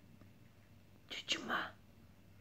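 A woman whispering "ay, ay" softly, in two short breathy bursts a little over a second in, with faint room tone before them.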